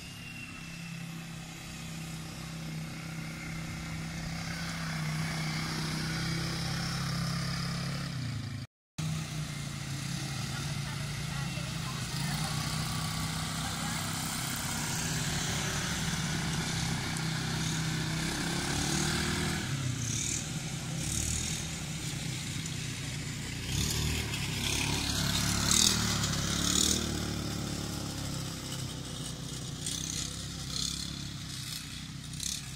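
Small ATV (quad bike) engines running steadily in a low drone as the quads circle a grass track. The sound cuts out completely for a moment about nine seconds in, and a few short rushing noises come near the end.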